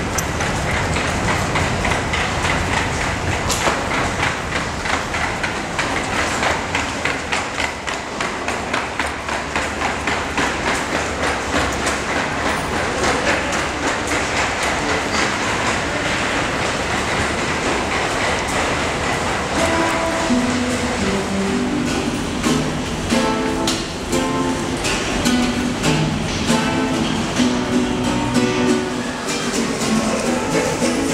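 Subway train noise, a steady rumble with rapid clattering, fills most of the stretch. About two-thirds of the way through, plucked acoustic guitar notes come in over it.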